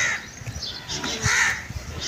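A crow cawing, with a harsh call about a second in.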